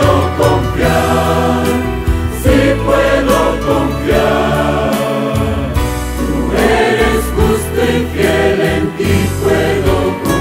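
Large mixed choir singing in parts, accompanied by an electronic keyboard holding steady bass notes underneath.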